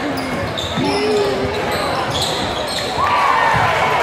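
Sounds of a basketball game: the ball bouncing on the court, shoe squeaks and the voices of spectators and players. A loud shout comes about three seconds in.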